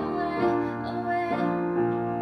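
Upright piano playing a slow accompaniment: a few chords struck in turn, each left ringing, with a new one roughly every half second to a second.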